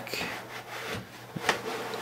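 LEGO model being slid by hand across a tabletop: faint plastic scraping and handling, with a few light clicks, the sharpest about one and a half seconds in.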